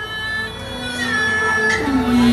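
Instrumental accompaniment of a Taiwanese opera performance: a reedy melody instrument playing held notes, with a lower sustained note coming in about halfway through.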